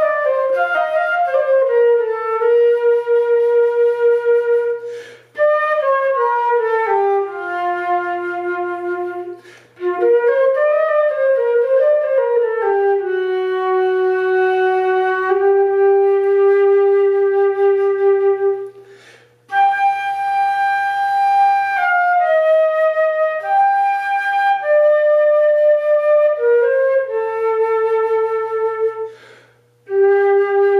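Solo concert flute playing an unaccompanied, mostly stepwise melody of long held notes. Four short breaks for breath interrupt it.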